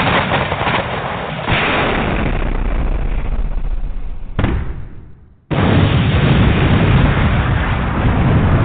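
Explosion sound effects from a radio drop: a continuous blast rumbling on, a new blast about four and a half seconds in that dies away to silence, then another loud blast cutting in suddenly about a second later.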